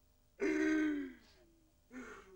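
A man's wordless anguished cry, about half a second in and lasting under a second, its pitch sliding down as it fades, followed near the end by a shorter, weaker cry.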